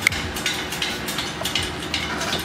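Scattered metallic clinks and knocks of engine parts and tools being handled, with a sharp clank right at the start.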